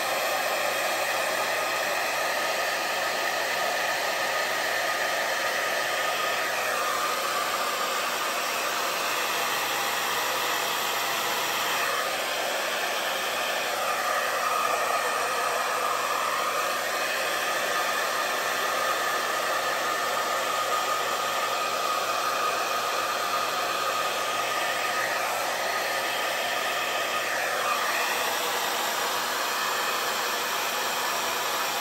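Hair dryer running steadily on medium-high fan with cool air, blowing wet fluid acrylic paint outward across a canvas. Its tone shifts slightly a few times as it is moved.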